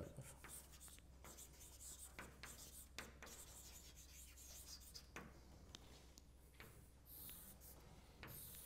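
Chalk writing on a blackboard: faint, irregular scratching and tapping strokes.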